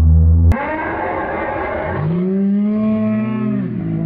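A person's voice making a long, drawn-out moan that rises and then falls in pitch, lasting about a second and a half near the end, after shorter vocal sounds. A low drone cuts off about half a second in.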